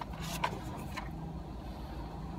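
Steady low hum inside a car's cabin, with two light clicks about half a second and a second in.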